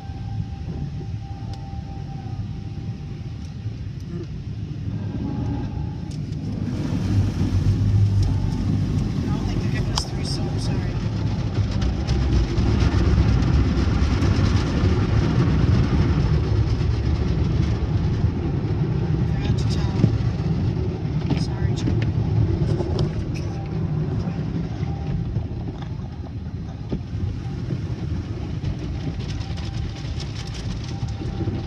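Automatic car wash heard from inside the car: brushes and water spray working over the soaped windshield and body, a steady low rumble and swish. It grows louder about seven seconds in and eases off again in the last few seconds.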